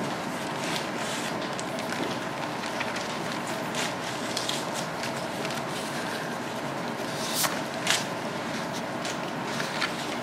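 Room tone in a hushed hall of seated people: a steady hiss with scattered small rustles and clicks, two sharper clicks close together about three-quarters of the way through.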